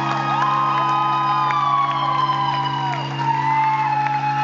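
Live instrumental rock band on bass, guitar and drums holding low sustained notes, with the audience whooping and shouting over the music.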